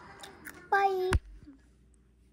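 A child's voice makes a short, steady-pitched sound lasting under half a second, about a second in. It is cut off by a sharp click, and near silence follows.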